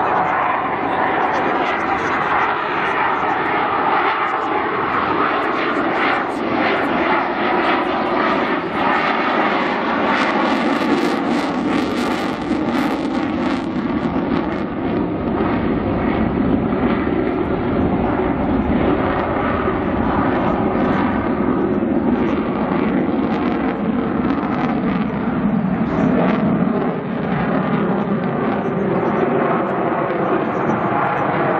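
Dassault Rafale fighter's twin Snecma M88 jet engines in display flight with afterburner lit: loud, continuous jet noise that crackles for a few seconds near the middle, its pitch slowly drifting down.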